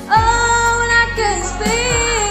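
A teenage girl singing solo over a recorded pop backing track. She holds one long note for about a second, then moves down to lower notes, over a deep repeating bass beat.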